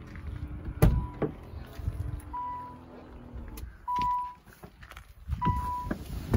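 A 1990 Nissan 300ZX's warning chime beeping four times, about every second and a half, with the driver's door open and the key in the ignition. A man climbs into the driver's seat, and a sharp thump about a second in is the loudest sound.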